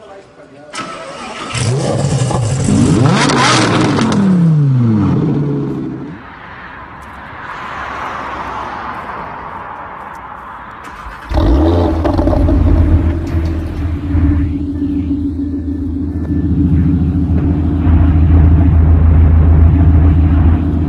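Car engine sounds: a car passes with its engine note sweeping down in pitch, a quieter rushing noise follows, then about eleven seconds in an engine starts abruptly and runs with a deep, steady rumble that grows louder near the end.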